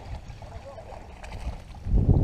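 Hooked sea trout splashing at the water's surface as it is reeled in, over a low steady rumble.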